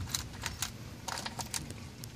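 A plastic cam-lock hose coupling and its metal clamp arms being fumbled into place by hand, giving a run of small irregular clicks and rattles.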